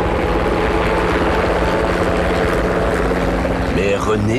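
A helicopter hovering, its rotor and engine running with a loud, steady, fast-beating drone.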